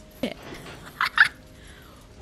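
Movie soundtrack of a train wreck: a faint steady rumble with two short, loud high-pitched squeals about a second in.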